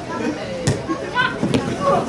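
Footballers' voices calling out on the pitch. There are two sharp knocks less than a second apart, the ball being kicked.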